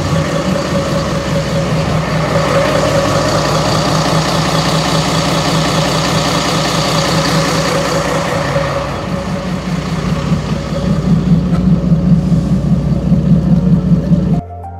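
Twin FPT NEF 400 six-cylinder marine diesel engines running steadily, heard close up through the open engine hatch. In the last few seconds the sound grows louder, with a pulsing low beat.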